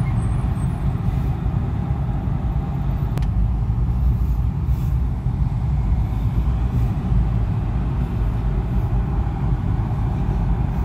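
Steady low road and engine rumble of a Toyota car heard from inside its cabin as it drives in traffic, with one faint click about three seconds in.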